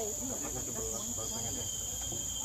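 Steady high-pitched insect chorus, with a second thinner, lower insect tone joining about a second in; faint voices underneath.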